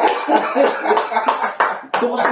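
Two men laughing hard in gasping bursts, with a few sharp hand claps in the second half.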